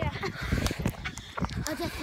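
Phone microphone being grabbed and jostled, giving low rumbling and a string of short knocks, with brief snatches of a boy's voice.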